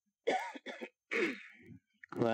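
An elderly man clearing his throat close to a microphone: three short, rough bursts within about a second and a half.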